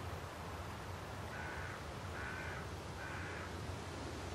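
A bird calling three times, each call about half a second long and evenly spaced, over a steady hiss.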